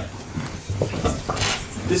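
A pause in a man's speech: steady low room hum with a few faint clicks, before his voice resumes at the very end.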